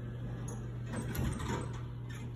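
Elevator car and hall doors sliding shut, the door mechanism running loudest about a second in and easing off near the end, over a steady low hum.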